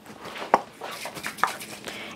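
A few light clicks and handling sounds from a cooking spray can being picked up and readied in the hands, with a sharper click about half a second in.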